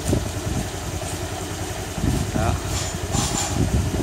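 Honda Air Blade 125 scooter's single-cylinder four-stroke engine idling steadily with a low rumble.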